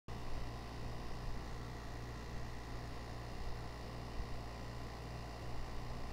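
Steady low hum with a faint, even hiss underneath: background room noise.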